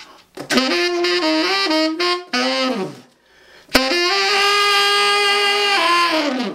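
Tenor saxophone played with a growl and a rolled tongue (flutter-tonguing) for a dirty rock-and-roll tone. It plays a short phrase of several notes that ends in a downward fall, then a long held note.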